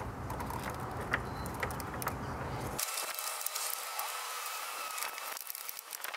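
Hand ratchet clicking in short, irregular runs, with small metal clinks of fittings being fastened at a car battery's mount.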